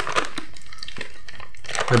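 A packet of fruit jelly candies rustling and crinkling while a hand reaches in to take some.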